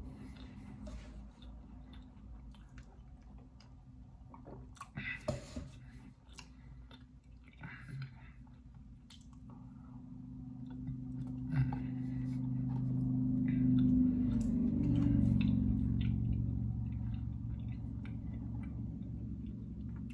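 A person chewing a mouthful of soft cookie, with wet mouth clicks and lip smacks scattered through. A steady low hum grows louder in the second half and then eases off.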